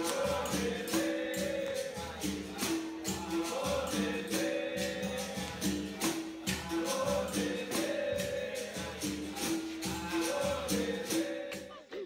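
Capoeira Angola roda music: berimbaus ringing in a repeating pattern of two alternating notes over the jingle and clicks of a pandeiro, with voices singing.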